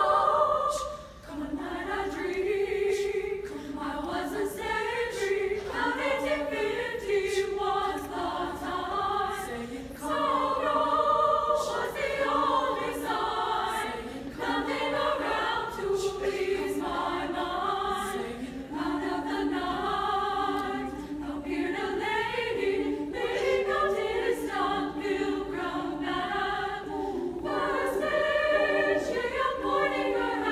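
Women's choir singing in harmony, with a brief break between phrases about a second in.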